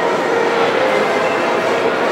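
Steady, loud background noise with a faint hum.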